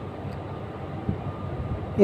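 Steady low background rumble with a faint thin tone above it, in a pause between speech.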